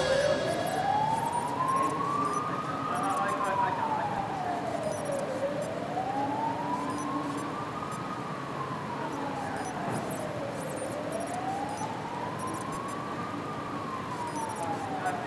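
A siren wailing in a slow, even rise and fall, about five seconds per cycle, heard for two and a half cycles over a faint steady background hum.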